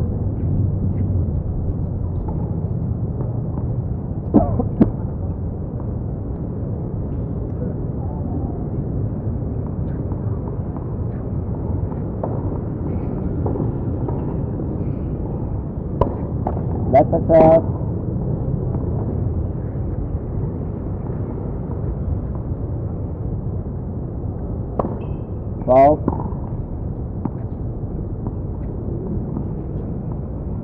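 Tennis court ambience: a steady low background rumble, broken by a few sharp tennis ball strikes and bounces in small clusters. Short voice-like calls come with the clusters around the middle and near the end.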